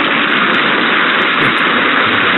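A loud, steady rushing hiss with no pitch, from the sound effect of an animated slide transition in a presentation.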